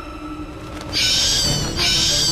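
Two shrill, high-pitched bat screeches used as a sound effect: the first about a second in, the second just before the end and running on past it. Soft background music plays beneath them.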